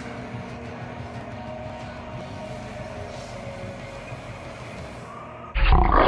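Gym background with a steady hum and faint music, then about five and a half seconds in a sudden, much louder burst lasting about a second as the picture goes black.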